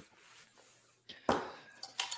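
Near silence, broken about a second and a quarter in by one short burst of noise that fades quickly, followed by a couple of faint ticks.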